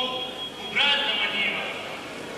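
Voices from the stage chanting in long drawn-out pitched notes: a brief one at the start and a longer one from just under a second in until shortly before the end.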